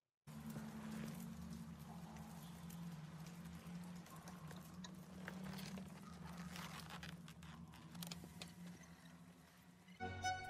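Quiet film-scene ambience: a steady low hum with scattered faint clicks and pattering over it.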